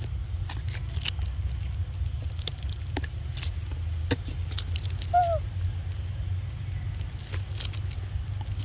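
Steady low outdoor rumble with scattered faint clicks, and one brief squeak about five seconds in.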